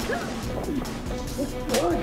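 Fight scene with dramatic background music under short shouts and grunts, and a sharp hit near the end.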